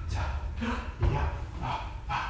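A man's short wordless vocal sounds and breaths, with a thump about a second in.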